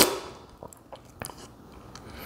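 A single short, sharp slurp of brewed coffee from a cupping spoon at the very start, then a few faint small clicks while the coffee is held and tasted.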